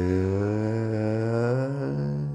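Male Carnatic vocalist singing in raga Saveri, holding a vowel that glides slowly upward in pitch, over a steady low drone.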